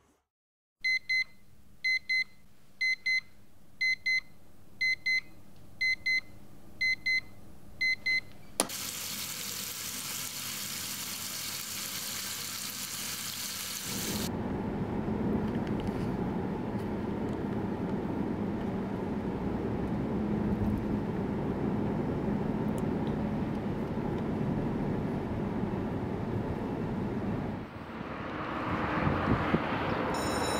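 Electronic alarm clock beeping in quick double beeps, about one pair a second for some eight seconds, then cut off with a click. A steady hiss follows for about five seconds, then a steady low rumble of city ambience that swells near the end.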